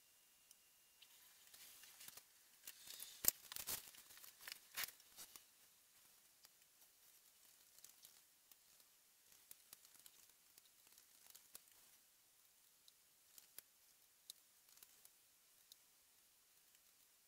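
Near silence: room tone, broken by a short run of faint crackles and clicks about two to five seconds in, then a few scattered faint ticks.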